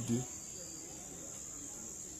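Crickets trilling steadily in one continuous high-pitched note, with the last of a spoken word at the very start.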